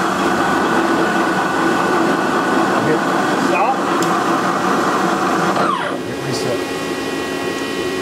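CNC vertical milling machine running, a steady mechanical whir with faint steady tones, and a brief falling whine about six seconds in.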